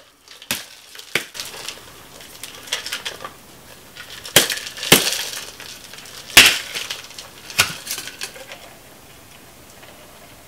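Tin-on-tin cocktail shaker full of ice being struck sharply to break the seal after shaking. There are about half a dozen sharp knocks at irregular intervals, the loudest about six seconds in.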